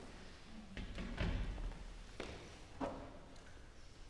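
Footsteps on a stage floor and a euphonium being set down on the floor, with a heavy thud about a second in and a couple of sharper knocks after.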